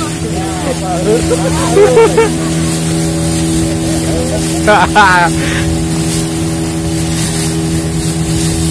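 Motor of a wooden outrigger boat running steadily under way, with water rushing and splashing along the hull and float. Voices shout briefly about two seconds in and again about five seconds in.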